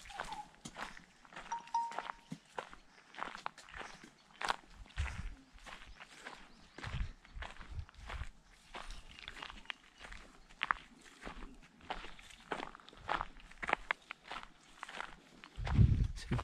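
Footsteps on a dry dirt path, treading through dry grass and leaf litter at a steady walking pace.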